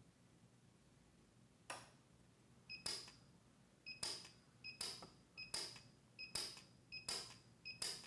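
PUK U5 micro TIG welder firing single pulse welds on a steel edge with fine filler wire: one sharp crack about two seconds in, then a steady run of short cracks about one every 0.8 s, each just after a brief electronic beep.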